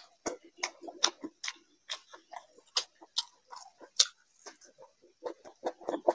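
Close-miked chewing of a mouthful of curried chicken: a steady run of wet mouth clicks and smacks, a few a second.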